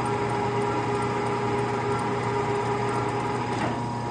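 Bulgarian metal lathe running steadily through a single-point threading pass, its motor and gearing giving a steady hum. Near the end the clutch is thrown and the spindle comes to a stop at the end of the pass, ready to be reversed.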